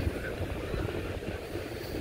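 Wind buffeting the phone microphone: an uneven low rumble with a faint hiss over it.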